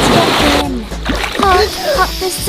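A man and a small child jumping together into a swimming pool: one big splash of water that dies away about half a second in. Sung children's song with backing music comes back in the second half.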